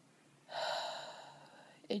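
A woman's heavy breath that starts suddenly about half a second in and fades over about a second, followed by her voice starting to speak near the end.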